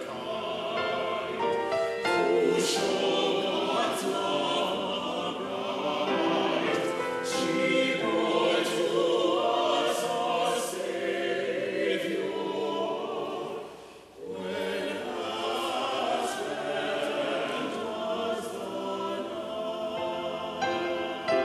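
Mixed church choir singing a sustained choral anthem, with a brief break between phrases about two-thirds of the way through.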